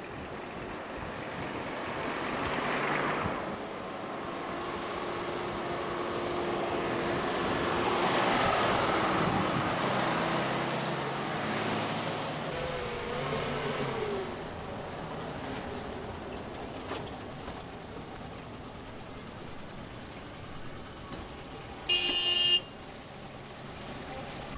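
Road traffic: vehicles passing, their noise swelling and fading twice, with a short high horn toot near the end.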